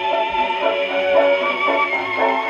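Decca 71 acoustic gramophone playing a dance-band record: a short instrumental passage between sung lines, with the narrow, old-record tone of horn playback.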